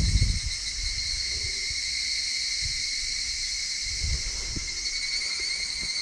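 A steady chorus of insects, a high continuous trill, with a few low thumps near the start and about four seconds in.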